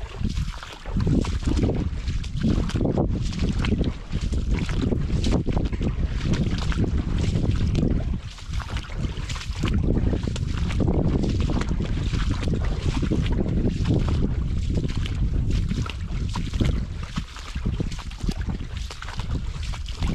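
Wind rumbling and buffeting on the microphone, uneven in loudness, over irregular splashing and squelching steps through the shallow water and mud of a ditch.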